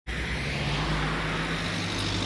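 Road traffic: a car driving past on the street, a steady noise of tyres and engine with a low hum that fades near the end.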